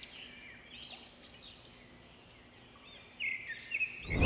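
Small birds chirping: short, high, arched calls repeated through the first half, a brief lull, then a louder quick run of chirps about three seconds in.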